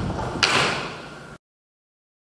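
A loud, sharp bang about half a second in, ringing on in the hall as it fades. The sound then cuts off suddenly into dead silence.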